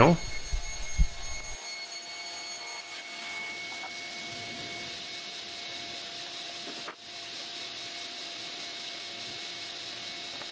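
Steady machine noise, an even whoosh with faint steady tones, that dips briefly about seven seconds in; a light knock about a second in.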